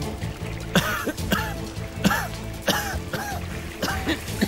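A man coughing repeatedly, six short coughs about every half second, choking on smoke in a burning boat cabin, over steady dramatic background music.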